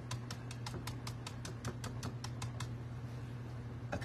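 Stencil brush pouncing paint through a stencil onto a painted board: a quick even run of light taps, about seven a second, that stops about two-thirds of the way through, over a steady low hum.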